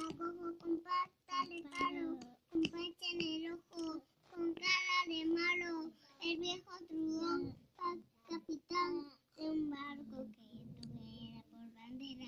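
A young child singing a children's song unaccompanied, in a run of short held notes broken by brief pauses.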